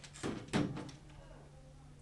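Two short thumps about a third of a second apart, the second louder.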